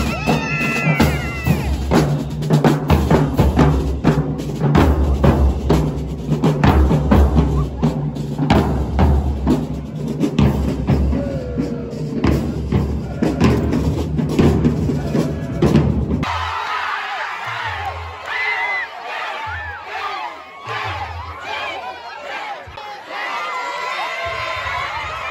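Marching band drumline playing a fast cadence on snare drums, bass drums and cymbals, with brass and a cheering crowd under it. About sixteen seconds in it cuts to a crowd cheering and screaming.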